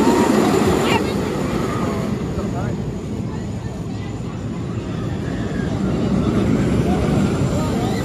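Motorbike-style roller coaster train (Velocity) running along its steel track, a steady rumble that grows louder near the end as the train comes close overhead, with faint voices.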